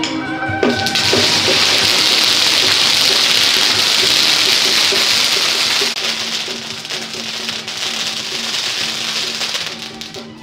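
Traditional temple procession music, overlaid from about a second in by a loud, dense crackling hiss that eases a little about six seconds in.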